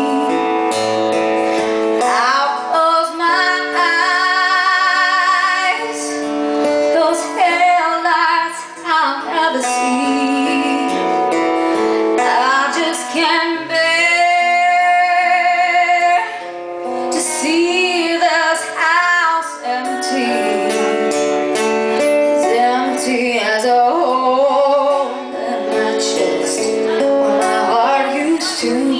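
A woman singing a country ballad live into a microphone over guitar accompaniment, with long held notes that waver with vibrato.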